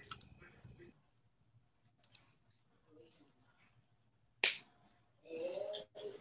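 A mostly quiet pause with a few faint clicks, then one sharp click about four and a half seconds in, followed by a faint voice shortly before the end.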